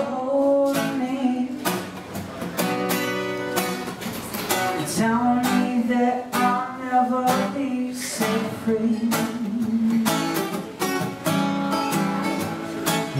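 A man singing while strumming an acoustic guitar, with sung phrases held and bending in pitch over a steady strummed rhythm.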